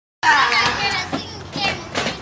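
Children's voices calling out in high-pitched shouts, loudest in the first second, then shorter calls.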